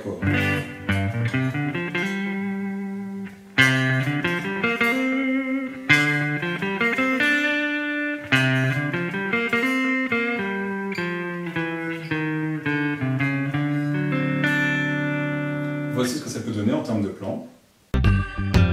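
Telecaster-style electric guitar playing single-note blues phrases in the pentatonic, each running from a chord's root up to its octave. Some notes slide or bend in pitch. New phrases start sharply about three and a half, six and eight and a half seconds in, and the guitar fades out just before the end.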